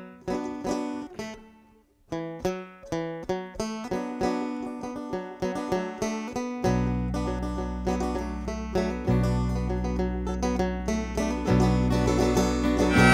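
Instrumental intro played on banjo, acoustic guitar and electric bass. The banjo picks a short run, stops briefly, then picks a steady rhythm with the guitar, and the electric bass comes in about halfway through.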